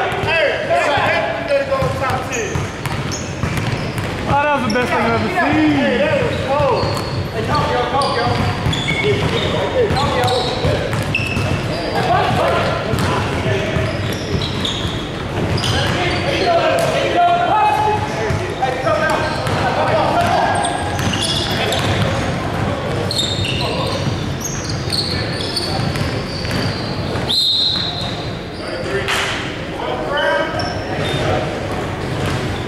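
Pickup basketball game on a hardwood court: the ball bouncing and thudding on the floor amid players' indistinct shouts and talk, echoing in a large gym.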